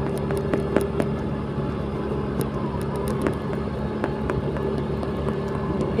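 Small motor scooter engine running steadily at cruising speed, a steady hum with wind and road noise and a few faint ticks.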